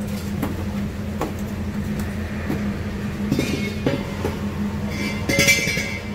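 Steady low hum of a busy stall kitchen, with taps and clinks of steel utensils against metal pots and bowls as food is ladled and handled. The clinking is loudest about three and a half seconds in and again near the end.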